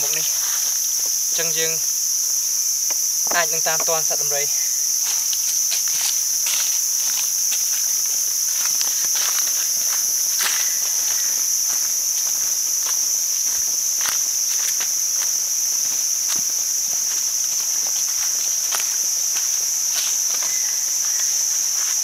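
Steady, high-pitched drone of forest insects, with footsteps on dry fallen leaves along the trail.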